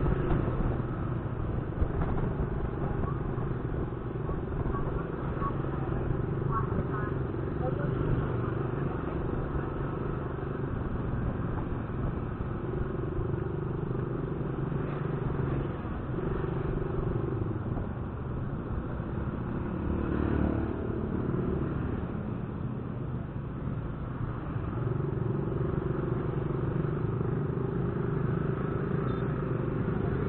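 Yamaha scooter's single-cylinder engine running under way at a steady level, its hum shifting in pitch as the throttle changes, with road noise.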